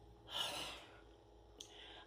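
A woman's audible breath: one short breathy rush of about half a second, followed by a faint mouth click, over quiet room tone.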